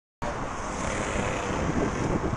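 Wind noise rushing over the microphone of a camera mounted on a moving road bicycle. It cuts in abruptly a moment in.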